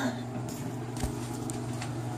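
A steady low hum, with a few faint clicks and one dull thump about a second in.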